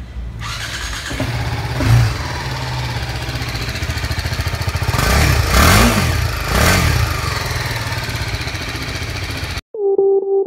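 BMW G310R's 313 cc single-cylinder engine running at idle through its stock exhaust, blipped briefly about two seconds in and revved up and back down twice near the middle. Just before the end it cuts off and music begins.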